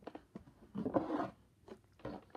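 Cardboard box flaps being pulled open and handled, with a few small clicks and a rustle about a second in.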